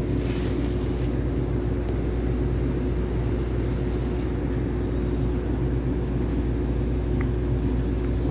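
Steady hum of an electric commuter train's onboard equipment, heard from inside a carriage standing at a station platform. A short hiss comes near the start.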